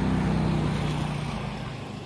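A low engine hum, as from a passing motor vehicle, that fades away over about a second and a half.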